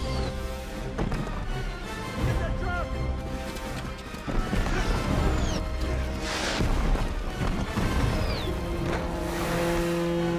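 Film score mixed with volcanic eruption sound effects: a deep, continuous rumble with scattered crashes and a few short falling whistles.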